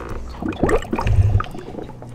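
Small water sounds in a fish tank: a quick run of irregular drips and bubbles, with a low thump a little after a second in.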